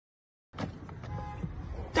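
Dead silence for about half a second, then low, steady outdoor background noise picked up by a phone microphone, with a faint voice in it.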